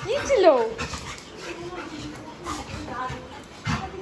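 A Labrador retriever whining while being played with: a short cry that rises and then falls in pitch at the start, then a longer, lower whine through the middle.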